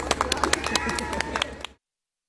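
A few people clapping with voices cheering, the claps quick and uneven. The applause fades and cuts off suddenly into silence near the end.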